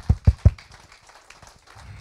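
A short run of quick hand claps, about six a second, that sound as heavy thumps close to a handheld microphone. They stop about half a second in.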